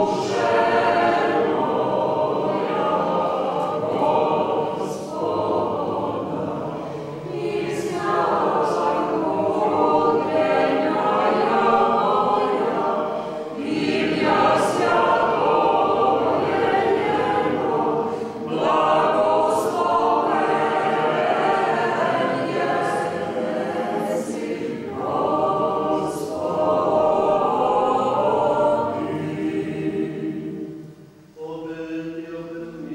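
Church choir of mostly women's voices singing unaccompanied, in sustained phrases with short pauses for breath every five or six seconds.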